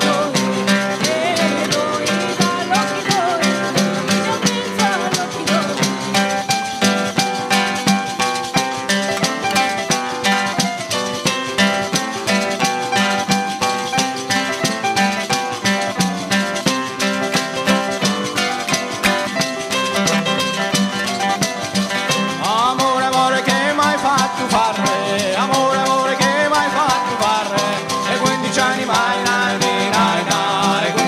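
Live folk music: a tambourine frame drum keeps a fast, even beat under guitar and keyboard. A voice sings over it in the last third.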